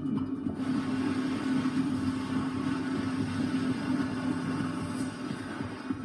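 Documentary soundtrack played through a television's speaker: a steady low drone under a rushing noise that grows stronger about half a second in.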